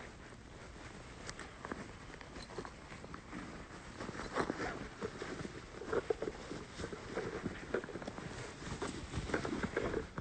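Rustling and handling noise close to a phone's microphone, with scattered clicks and soft knocks, busier and louder from about four seconds in.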